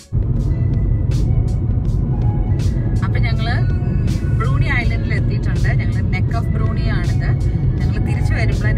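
Steady low rumble of a car driving along a road, heard from inside the car. A song with a singing voice plays over it, clearest from about three seconds in.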